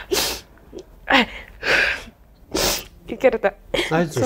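A woman crying: four sharp sniffling, sobbing breaths, one of them with a short falling whimper, then a couple of tearful words near the end.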